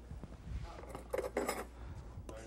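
Metal fork clinking against a small plate, a few quick clicks about a second in.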